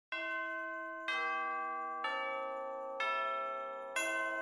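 Four bell tones struck about a second apart, each a step lower than the last, each ringing on and overlapping the next, like a descending chime.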